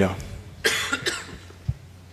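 A person coughing close to a microphone: one sharp cough about two-thirds of a second in and a smaller one just after, over a steady low hum of the sound system.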